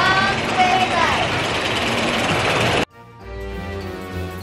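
Two young girls squealing and laughing on a moving amusement ride, over a steady rush of wind and ride noise. It cuts off suddenly near the end, and a short music jingle begins.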